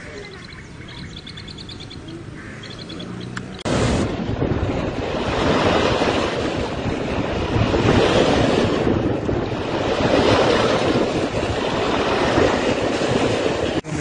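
Faint bird chirps, then an abrupt cut about four seconds in to a loud, steady rush of wind on the microphone over choppy reservoir water, swelling and easing every couple of seconds.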